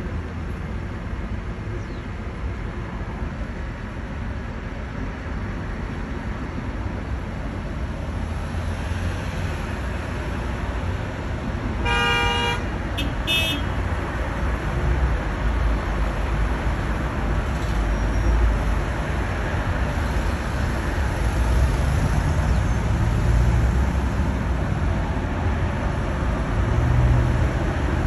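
City street traffic: a steady low rumble of car engines and tyres, growing a little louder in the second half as the cars move. About halfway through, a car horn honks once for about half a second, followed by a brief second toot.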